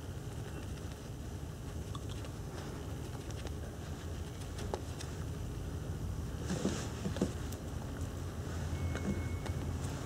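Faint soft taps and rubbing of a cushion-foundation puff being patted and pulled across the face, over a low steady room hum. A short breathy noise comes about two-thirds of the way through.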